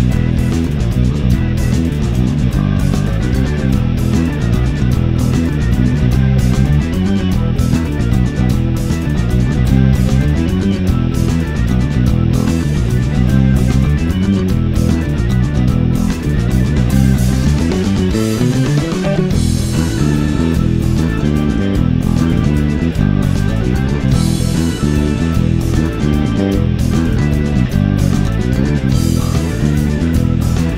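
Instrumental passage of a progressive rock song, mixed so that the bass guitar is loud and up front, with electric guitar over it. About two-thirds of the way through, a pitch glide rises in the low-mid range.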